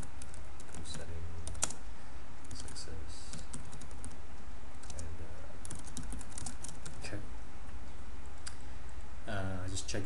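Typing on a computer keyboard in several short bursts of keystrokes, over a steady low hum.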